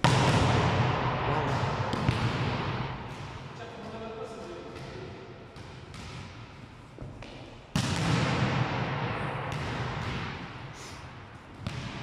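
A volleyball struck hard twice, at the start and again about two thirds of the way in, each smack ringing out long in a large echoing gym hall. Smaller knocks of the ball bouncing on the floor come in between.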